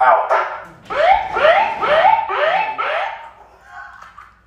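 Loud siren-like whoop through a handheld megaphone: a rising tone that levels off, repeated four times about half a second apart.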